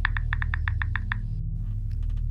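A quick run of about ten light, even ticks, roughly seven a second, stopping about a second and a half in. A low steady hum from the background score runs under it, and a few faint clicks come near the end.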